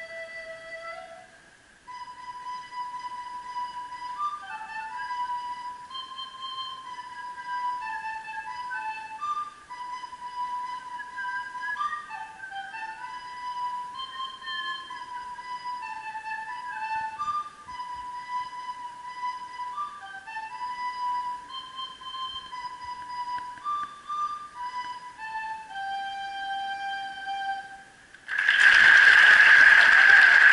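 Solo recorder playing a slow melody into a microphone, the notes stepping up and down, closing on a long held lower note. Just before the end, a sudden loud burst of noise takes over.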